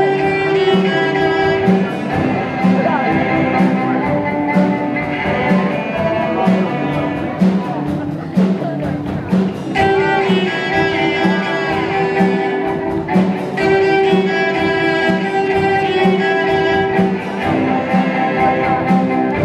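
Cello ensemble playing a rhythmic piece live: a steady repeated low note about twice a second under sustained higher melody lines, with sharp percussive hits throughout.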